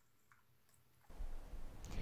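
Near silence with a couple of faint clicks, then a low steady hiss of room tone comes in about a second in, with a few small clicks.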